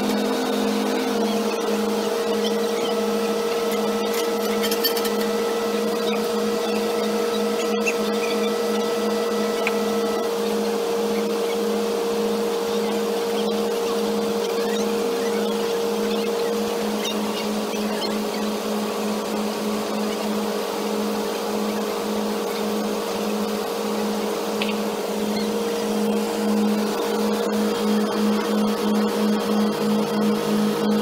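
Diesel engines of heavy piling and excavating machinery running steadily: a constant drone with an even pulsing beat, which swells slightly near the end.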